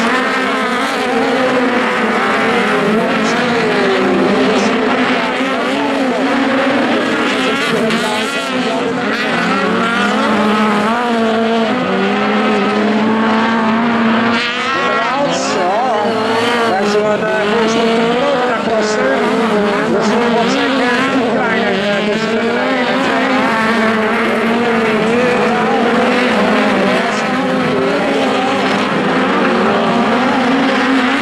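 Several air-cooled Volkswagen Beetle autocross racers running together on a dirt track, their engines overlapping and rising and falling in pitch as they accelerate and lift through the corners.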